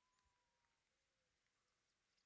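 Near silence: very faint outdoor background, with a faint thin tone in the first second.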